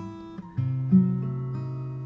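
Acoustic guitar strummed in a song's instrumental gap: chords struck at the start and again about half a second in, then left to ring.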